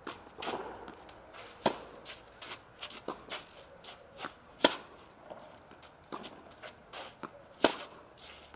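Tennis ball struck hard with a racket three times, about three seconds apart, in a baseline rally on a clay court, with fainter hits and ball bounces from the far end in between. Shoes scuff on the clay between strokes.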